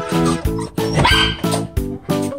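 Background music with a steady beat. About a second in, a Shiba Inu barks once over it.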